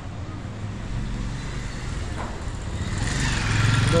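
Motorcycle engine running as it draws close and passes, growing louder in the last second, over a low traffic rumble.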